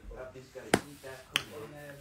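Two sharp clicks a little over half a second apart, with faint talk underneath.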